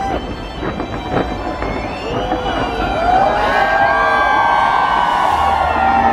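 A fireworks display goes off with several sharp bangs in the first second or so, mixed with music and a crowd shouting and cheering. The crowd and music grow louder from about three seconds in.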